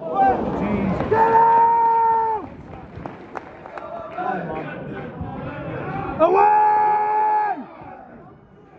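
Football crowd noise with a man shouting two long, held calls, each about a second and a half, the pitch dropping at the end: one early on, the other near the end.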